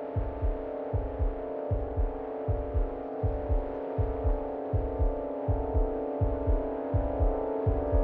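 Suspense film score: a sustained low synth drone over a pulsing heartbeat-like bass, pairs of low thumps a little less than once a second, growing slowly louder.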